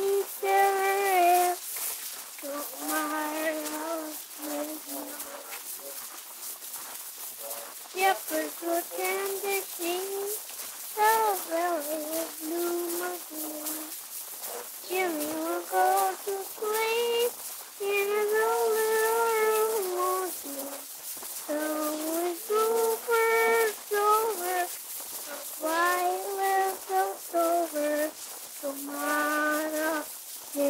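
A high voice singing a tune in short phrases with held notes, played back from a damaged 1942 Wilcox-Gay Recordio home-recorded acetate disc. It sounds thin, with no bass, over a steady surface hiss.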